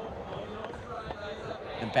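Skateboard wheels rolling over a plywood ramp course, a steady rolling noise.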